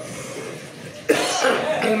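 A man coughs once, sharply, about a second in, and then goes straight back to speaking.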